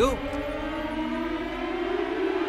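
Horror film score: a sustained drone of several held tones slowly rising in pitch, like a drawn-out siren.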